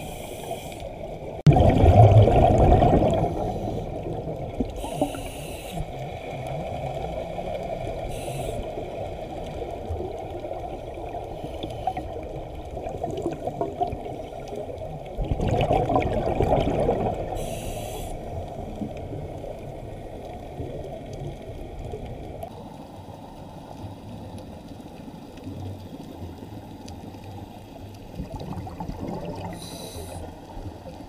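Underwater water noise as heard by a submerged camera: a steady rushing churn, with two louder bubbling surges about two seconds in and again around sixteen seconds, and a few short high hissing bursts. It eases off in the last third.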